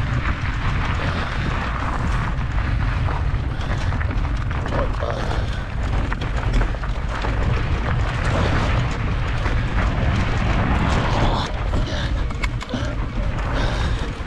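Mountain bike rolling downhill over gravel and loose stones in a dry riverbed: tyres crunching, with frequent small clicks and knocks from stones and the bike rattling. Wind rumbles steadily across the camera microphone.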